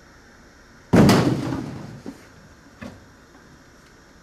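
A door slamming shut once, about a second in, the bang dying away over about a second. A faint knock follows near the end.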